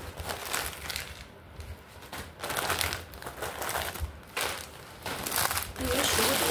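Plastic snack packets crinkling and rustling as they are rummaged through in a cardboard box, in irregular bursts that are loudest about halfway through and near the end.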